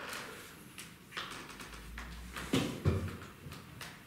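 A few soft thuds and knocks of a person shifting and stepping on a hard floor, the two louder thuds close together about two and a half seconds in.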